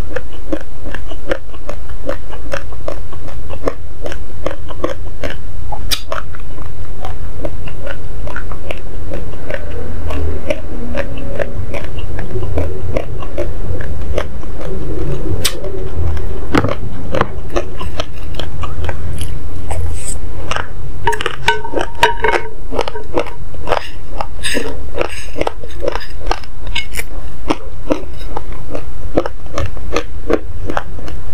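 Close-miked chewing of uncooked basmati rice: a rapid, continuous run of dry, sharp crunches and cracks as the hard grains break between the teeth.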